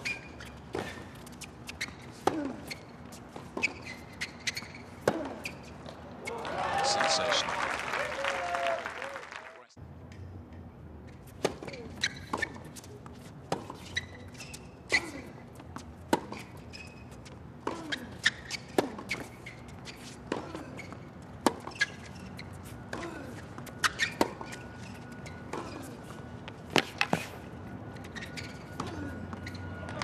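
Tennis rallies on a hard court: sharp racket-on-ball strikes going back and forth, with shoe squeaks. A burst of voices comes about six to nine seconds in, and the sound cuts off abruptly just before ten seconds as the highlights jump to the next point.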